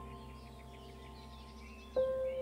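Soft new-age background music: a held chord fading slowly, with a new note entering near the end, and birdsong chirping over it.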